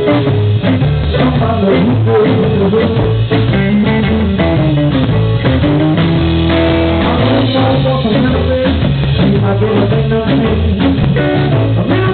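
Live blues band playing: electric guitar over bass guitar and a drum kit, loud and steady.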